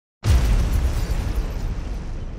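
Cinematic explosion sound effect: silence, then a sudden boom a fraction of a second in, followed by a deep rumble that slowly fades.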